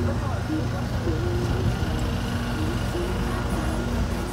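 Busy pedestrian shopping street: a steady low rumble of the city, voices of passers-by, and a simple melody of short held notes playing throughout.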